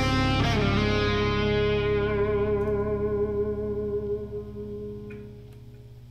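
Ibanez JS-series electric guitar, played through effects, sounding a final chord that rings out and slowly fades over about five seconds, ending the piece. A low steady hum is left once the chord has died away.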